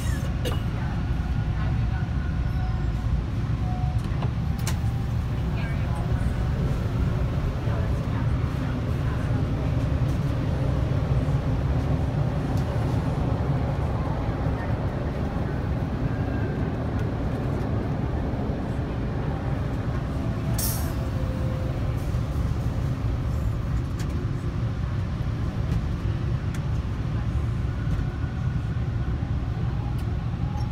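Steady low rumble inside a crowded subway car, with faint passenger voices in the background and a single sharp click about two-thirds of the way through.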